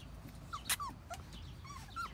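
Bullmastiff puppies giving a few faint, short whimpering squeaks, with a single sharp click about a third of the way through.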